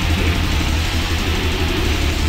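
Death metal instrumental passage: heavily distorted guitars over a dense, steady low rumble of bass and drums, with no vocals.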